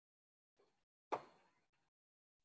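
Near silence, broken by one short, soft pop about a second in.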